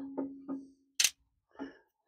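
Metal clinks as a lawn-tractor muffler and exhaust pipe are handled and taken off the engine. A short ringing tone fades within the first second, followed by a sharp click about a second in and a faint knock near the end.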